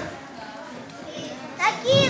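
Low murmur of a hall full of children, then a short, rising-pitched child's voice near the end.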